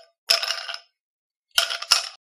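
Title-card sound effect: short bursts of bright clinking, about half a second each, coming roughly a second apart with dead silence between.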